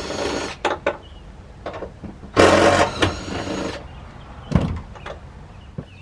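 A heavy SUV second-row seat being wrestled loose: two long scraping rubs a couple of seconds apart, with a few sharp knocks and a dull thud.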